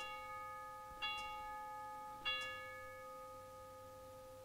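Altar bell struck three times about a second apart, each strike ringing on and slowly fading, marking the elevation of the chalice at the consecration.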